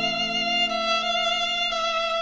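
Romantic instrumental music: one long held melody note with vibrato over a steady low sustained note.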